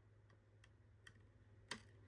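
Near silence with a few faint plastic clicks, the loudest about three-quarters of the way through: a trading card and a rigid clear plastic card holder being handled as the card is lined up to go in.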